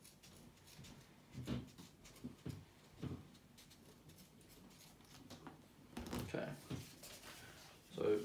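Scissors snipping kinesiology tape to round off the corners of a strip: a few faint, short cuts and handling sounds spread out, with a busier stretch about six seconds in.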